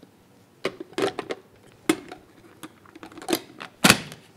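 Plastic clicks and knocks from a mini food processor as toast slices are pushed into its clear bowl and the red lid is fitted and locked on, with the loudest snap just before the end. The motor is not yet running.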